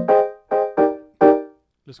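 Software lo-fi piano playing short chords triggered from a pad controller: about four chords struck in quick succession, each dying away quickly.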